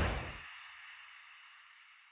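Tail of a whoosh sound effect from an animated logo, fading out within the first half second and leaving a faint high hiss that dies away.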